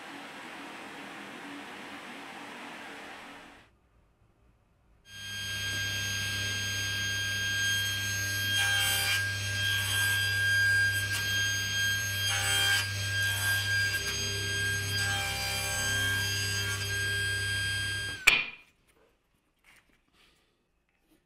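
Table saw running with a steady whine while a small wooden block is fed through it to cut slots, with several brief louder bursts of blade cutting wood; the sound cuts off abruptly near the end. Before it, a few seconds of softer steady noise.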